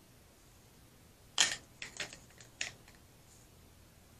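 A few sharp clicks and clinks over about a second and a half, starting a little over a second in, the first the loudest: a small glitter jar being picked up and handled, knocking against the stir stick and the tabletop.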